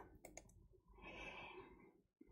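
Near silence: a couple of faint clicks early on, then a soft breath about a second in.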